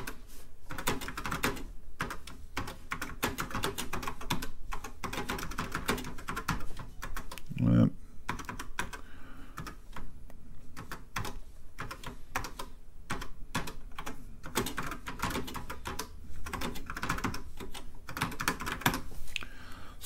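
Rapid keystrokes on a Tandy TRS-80 Model 4's freshly cleaned and reassembled keyboard: runs of quick clicks with a short pause near the middle. A short low vocal sound comes about eight seconds in.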